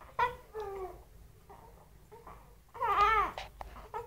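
Baby crying in short, wavering wails, the longest and loudest about three seconds in.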